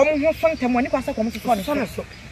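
A woman speaking in conversation, talking almost without pause.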